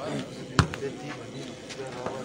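A volleyball struck hard by a player's hands during a rally: one sharp slap about half a second in, over the murmur of the crowd.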